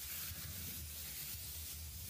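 Quiet room tone in a pause between words: a steady faint hiss over a low hum, with no distinct sounds.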